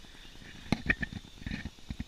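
Wobbler sprinkler head wobbling inside a PVC grow tower, giving an irregular low rattle and knocking as it sprays water around the tube's inner wall.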